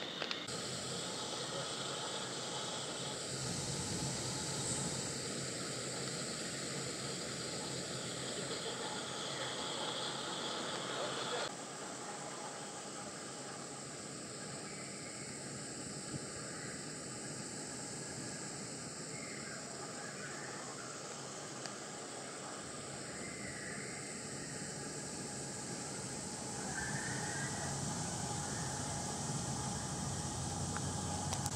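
Steady ambient background noise with no clear tones. It drops suddenly in level about a third of the way through, and faint brief sounds come through it in the second half.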